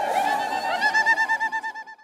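Women ululating in a crowd, many high trilling voices overlapping. From about a second in, one rapid trill of about ten pulses a second stands out, then fades out near the end.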